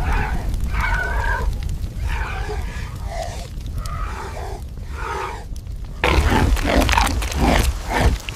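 Spotted hyenas growling and grunting in a string of short calls over a steady low rumble. About six seconds in, a louder, rougher stretch begins.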